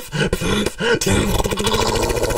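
Human beatboxing: a bending vocal bass line cut by sharp kick and snare strokes, turning about halfway through into a fast, buzzing growl bass of the dubstep kind.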